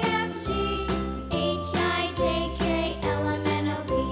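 Upbeat children's music with bright, chiming notes over a steady bass line, the notes changing about every half second.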